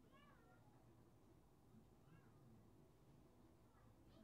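Near silence: room tone, with a few faint, distant high-pitched calls that rise and fall in pitch.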